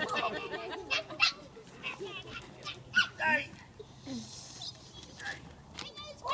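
Police dog snorting and grunting through its nose as it holds a full bite on a decoy's bite suit, in short scattered bursts, amid children's voices.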